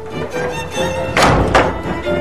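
Background score of sustained, held notes, with a heavy thud a little past a second in, followed by a weaker second one.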